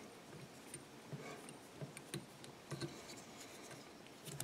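Faint, scattered small clicks and ticks from hands working thread and a hook at a fly-tying vise during a whip finish.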